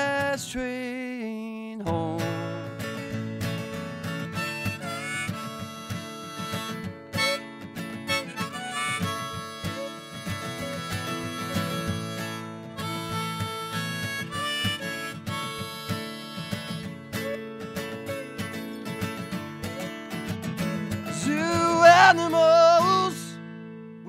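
Hohner harmonica played in a neck rack, taking an instrumental solo over a strummed acoustic guitar, loudest near the end.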